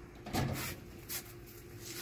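Stainless-steel outdoor kitchen cabinet door pulled open by its handle: a short noisy rush about a third of a second in, then a faint click a little after one second.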